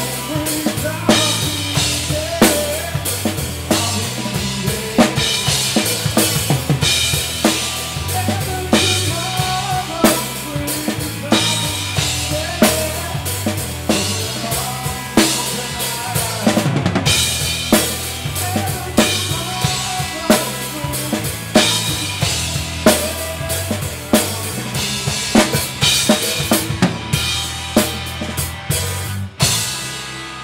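Live rock band playing, the drum kit loudest and close up, with steady kick and snare strokes over bass and electric guitar. The song breaks off with a few last hits near the end, leaving a quieter ringing tail.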